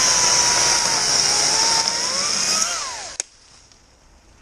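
Echo DCS-2500T battery top-handle chainsaw running, its motor whine dipping and then rising again before winding down about three seconds in. A sharp click follows.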